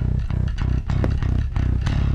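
Live band playing loudly, with heavy bass guitar, guitar and drums. The drums strike about four times a second.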